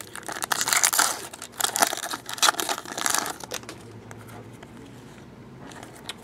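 A foil trading-card pack torn open by hand, its wrapper crinkling in a dense run of crackles for about the first three and a half seconds before it dies down.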